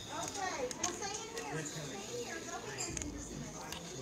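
Indistinct chatter of several voices in a room, with children talking and playing among them.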